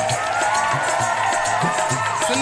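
Live Indian devotional ensemble music: a melody with sliding notes over steady dholak and tabla beats.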